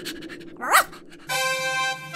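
A single short, high dog yelp a little under a second in, dubbed for a toy puppy. It is followed from about halfway through by a music cue of steady held notes.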